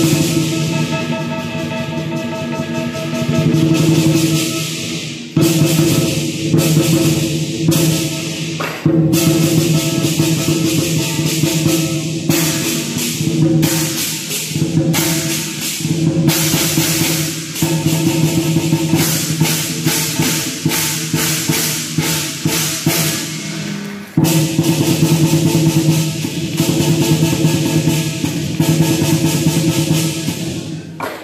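Southern lion dance percussion: a large lion drum beaten in a fast, driving rhythm with clashing hand cymbals ringing over it, playing continuously with short breaks a few times.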